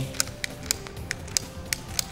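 A hand-operated PEX compression sleeve tool clicking in a quick, uneven series of sharp clicks, about three a second, as its handles are pumped to pull the compression sleeve up over the pipe and fitting. Soft background music plays underneath.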